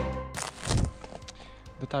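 Background music cutting off at the start. About half a second in comes a short burst of noise, then a fainter stretch. A man begins speaking near the end.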